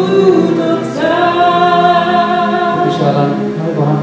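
Worship song sung by a woman into a microphone over sustained keyboard chords, with long held notes that change pitch about a second in and again near the end.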